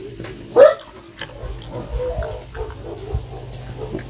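A pig grunting: one loud, short grunt about half a second in, then fainter grunts.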